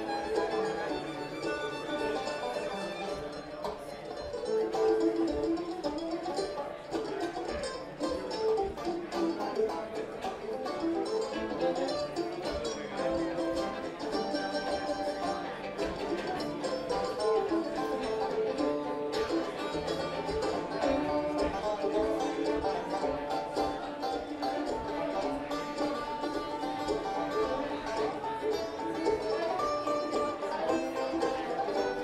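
Live acoustic bluegrass band playing an instrumental passage: banjo and fiddle to the fore over upright bass, acoustic guitar and mandolin.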